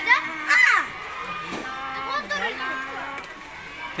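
Children's voices talking over one another, loudest in the first second, then quieter chatter.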